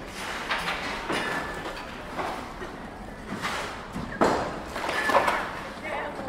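Footsteps on a cobbled street, a short knock roughly every half second to second, with people's voices in the background.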